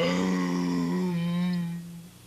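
A character's strange, wordless sung note: one loud held tone whose vowel shifts about a second in, cutting off just before two seconds. It is Larry's idea of singing.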